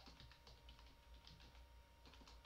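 Faint computer keyboard typing: a quick, uneven run of keystroke clicks as a line of code is typed.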